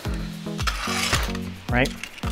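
A Flip Racers pull-back toy car's wind-up motor whirring as the car is run back and forth on a table, about half a second to a second and a half in, over background music with a steady beat.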